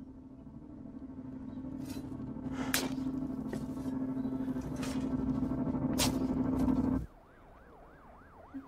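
A steady low droning tone swells gradually louder for about seven seconds, with a few sharp scrapes of a shovel cutting into dirt. It stops suddenly, and a faint siren wails up and down near the end.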